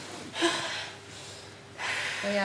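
A person's sharp, breathy gasps, twice: one about half a second in and another just before the end.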